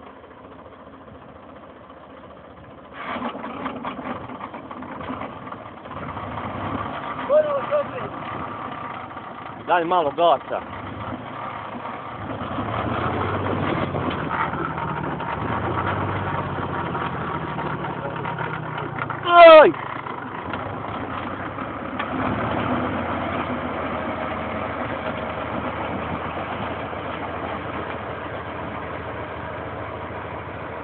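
Torpedo 4506 tractor's diesel engine running under load as its PTO-driven rotary tiller cuts into grass sod, the sound stepping up about three seconds in and again around twelve seconds. A loud shouted call cuts through about two-thirds of the way in.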